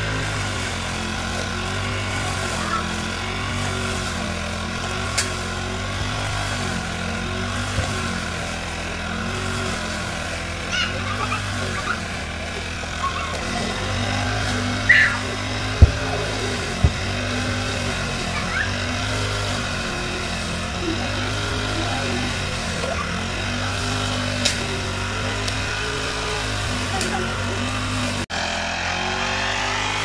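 Backpack petrol brush cutter running steadily at cutting speed, its engine note wavering slightly as the head works through tall grass. A few sharp clicks come through along the way.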